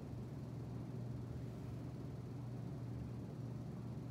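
Steady low hum with a faint even hiss, unchanging throughout: background room noise such as a running fan or ventilation.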